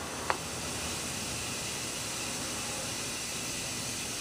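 Steady hiss of static, with one faint click a fraction of a second in.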